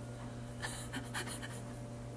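Faint scratchy rustling of hair and a synthetic clip-in hairpiece being worked into it by hand, over a steady low hum.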